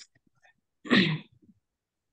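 A single short burst of a person's voice about a second in, lasting about half a second, heard over a video-call line.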